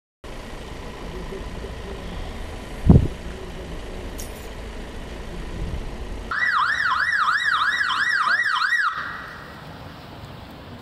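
Police vehicle siren sounding a fast yelp, about three up-and-down sweeps a second, for about two and a half seconds before cutting off. Before it there is street noise with one loud thump about three seconds in.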